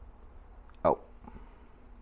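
A man's short wordless vocal sound, falling in pitch, about a second in, then a faint high hiss lasting under a second.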